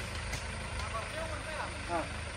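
Small tipper truck's engine running steadily at low revs, a low hum, with a few short calls from a man's voice over it.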